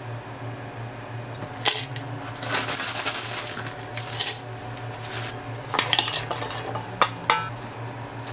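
Metal clinks and clatter against a stainless steel electric pressure-cooker inner pot as chopped leafy greens are dropped in, with the leaves rustling. There is one sharp clink about two seconds in and a burst of several clinks near the end, over a steady low hum.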